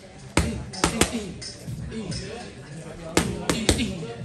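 Gloved strikes landing on a coach's focus mitts and belly pad in Muay Thai pad work: two quick combinations of three sharp smacks, one early and one near the end.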